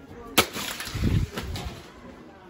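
A full plastic gallon jug slamming onto a hard store floor and bursting: one sharp crack, then about a second of splattering liquid with a few dull thumps.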